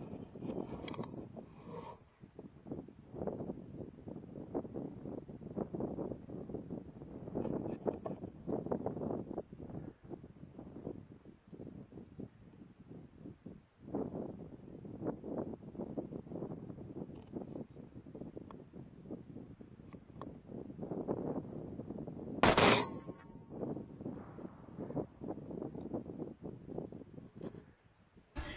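A single rifle shot about three-quarters of the way through, sharp and much the loudest thing, with a short ring after it. Before and after it, a low, uneven rustling noise.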